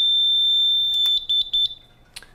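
Fire-sprinkler release control panel's buzzer sounding one steady high-pitched tone after the panel's system reset is pressed; about a second in there is a click, the tone breaks into a few short beeps and then stops.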